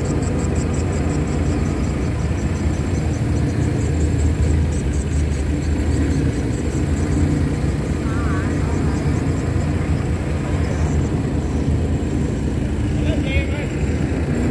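Diesel engine of a Kato crawler excavator running steadily, a constant low drone.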